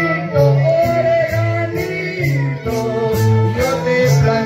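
Live Andean string band music played through loudspeakers: strummed guitars over a bass line and a steady beat, with a sung melody on top.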